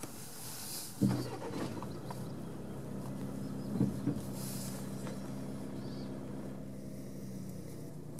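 A vehicle engine idling, a steady low hum that sets in with a thump about a second in, with a couple of short knocks near the middle.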